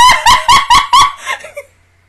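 A woman laughing loudly into a close microphone in a quick run of laugh pulses, about five a second, that stops about a second and a half in.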